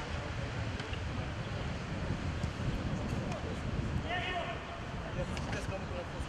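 Steady wind noise on the microphone with faint, distant players' voices; one short shout stands out about four seconds in.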